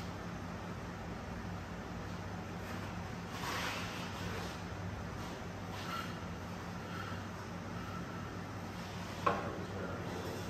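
Hands working on an engine and transaxle hung from an engine crane, over a steady low hum: a short scraping about three seconds in, a few small handling sounds, and one sharp knock near the end.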